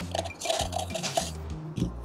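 Background music with a steady beat, over soft wet scraping of a plastic spoon working thick dental stone plaster out of a plastic cup.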